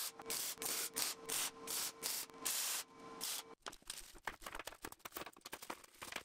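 Arc welding in short bursts, about two a second, each a crackling hiss with a steady hum under it. About three and a half seconds in it gives way to plastic bags crinkling as small hardware is handled.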